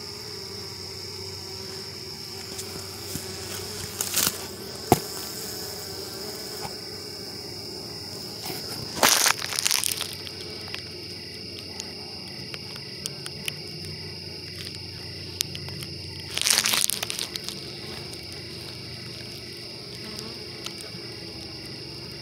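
Honey bees buzzing at the entrance of a mating nuc, a steady low hum, with a steady high-pitched tone underneath. Three brief bursts of rustling noise break in, about four, nine and seventeen seconds in.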